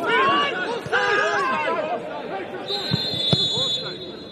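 Several men's voices shouting over one another on a football pitch, loudest in the first two seconds. Near the end a high, steady whistle tone sounds for about a second.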